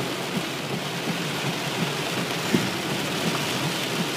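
Heavy rain falling on a car's roof and windshield, heard from inside the cabin as a steady, even hiss.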